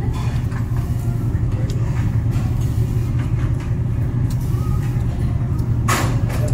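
A loud, steady low hum of restaurant machinery, with a few light clicks of chopsticks against bowls.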